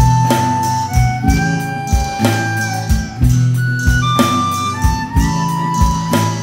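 Instrumental blues break: harmonica playing long held lead notes over acoustic guitar, acoustic bass and a programmed drum beat.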